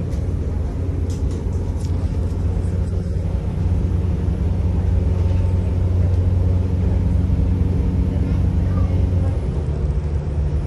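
Interior of a moving passenger train: the steady low rumble of the running train and its wheels on the rails, with a few faint light ticks about a second in.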